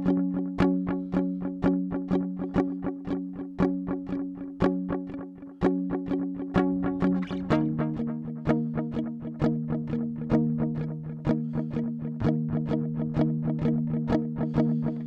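Electric guitar strumming an F#5 power chord over and over in a steady, slow rhythm, then switching to a lower D#5 power chord about halfway through and strumming it the same way.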